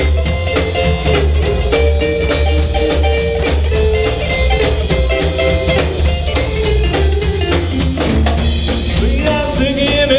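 Live rockabilly band playing: slapped upright bass, electric guitar and a steady drumbeat, with a voice coming in near the end.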